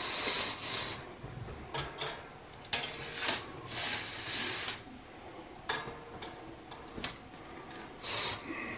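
Curtains being pulled shut along their rod: several scraping, swishing pulls in the first few seconds, then a few sharp clicks.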